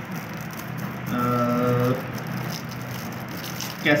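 Cellophane shrink wrap on a glue-board pack crinkling and rustling as it is handled, with a man's long hesitating 'aah' about a second in.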